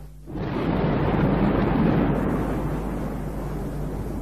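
Thunder sound effect: a rolling rumble that swells up about half a second in, is loudest a second or two in, then slowly dies away.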